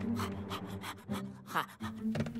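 A cartoon pug panting fast, in a rapid rhythmic huffing of about six breaths a second, over low steady background music. A quick rising whoosh comes about one and a half seconds in.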